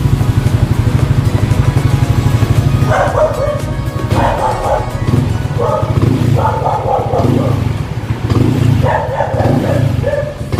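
Single-cylinder four-stroke engine of a bored-up 192cc Yamaha Aerox scooter running at a steady, even pulse, with the revs raised a little by the throttle toward the end.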